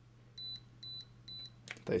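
Parkside infrared thermometer beeping three short, high beeps about half a second apart while it measures: its acoustic alert that the reading has gone warmer than the set reference temperature.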